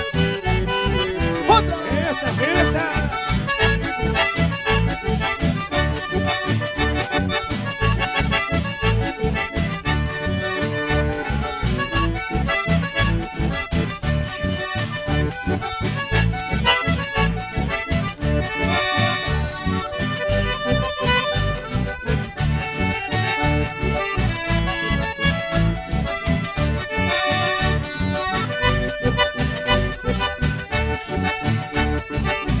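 Live band playing an instrumental stretch of a chamamé, led by accordion over a steady bass beat.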